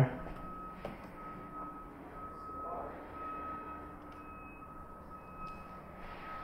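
Faint high-pitched electronic beeping tone, sounding with short breaks over quiet room noise.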